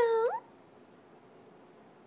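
A kitten's whiny meow that ends with a sharp upward rise in pitch less than half a second in, followed by quiet room tone.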